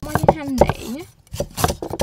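Cleaver chopping on a wooden chopping board: sharp, evenly spaced strikes, pausing in the first second and resuming in the second half. In the pause a brief vocal sound slides down in pitch and back up.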